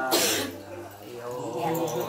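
A woman's unaccompanied voice in Mường folk singing, broken right at the start by a short, loud cough. The sung line then carries on with wavering held notes.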